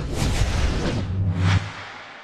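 TV sports-broadcast ident sting: a deep bass hit under electronic music with sweeping whooshes, a second sharp whoosh about a second and a half in, then fading away.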